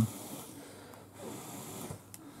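Faint, breathy hiss of a person drawing an inhale through a vape.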